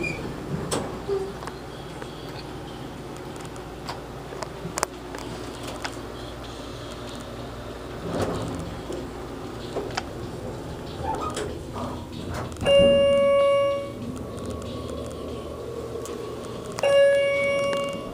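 Schindler hydraulic elevator car running with a steady low hum and a few light clicks, then two electronic chime tones about four seconds apart near the end, each ringing for about a second and louder than the hum.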